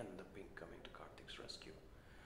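Soft, whispered voices at low level, with one short sharp click right at the start.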